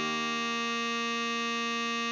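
Tenor saxophone holding one long, steady note (written C5, a tied note played at half speed) over a sustained accompaniment chord.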